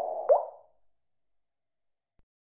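Closing sound effect of a channel logo animation: a fading tone ending in one short blip that slides quickly upward in pitch, about a third of a second in.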